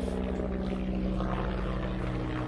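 Helicopter flying overhead: a steady drone of rotor and engine with a fast low beat from the blades.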